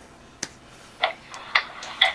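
One sharp click about half a second in, then a few fainter short ticks: the laptop being clicked to answer the Skype video call as it connects.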